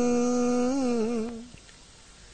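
A single voice chanting verse holds one long sung note at the end of a line, steady with a slight waver near the end, and fades out about one and a half seconds in.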